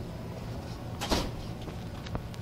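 A single short clatter about a second in, over a steady low background hum.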